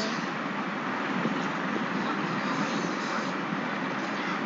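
Steady background rushing noise with no breaks or single events.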